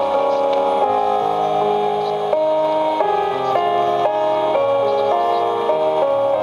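Instrumental music from an AM station on a Sony TFM-1000W portable radio, heard through its speaker: held notes and chords that change step by step every half second or so.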